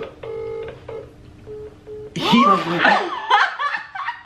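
Phone on loudspeaker sounding call tones: a pitched tone about half a second long near the start, then two short beeps about a second later. Loud group laughter follows from about halfway through.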